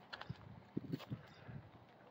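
Faint footsteps crunching on dry grass and dirt: a few soft, irregular steps.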